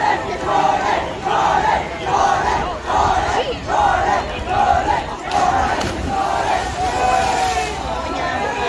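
A crowd of teenagers shouting and yelling at once, many high voices overlapping in loud, surging waves.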